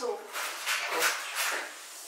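Quiet, indistinct talking in a small room.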